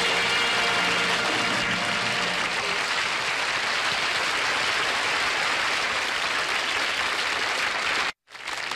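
Studio audience applauding steadily as a song ends. The music's last held note fades out about three seconds in.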